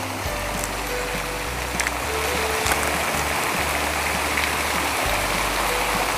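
Water running steadily down a fountain's glass wall, with soft background music of slow held notes underneath. A few faint crinkles come from a foil booster pack being torn open.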